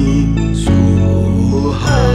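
Slow, soft music of long held notes over a low drone, the harmony shifting about two thirds of a second in and again near the end.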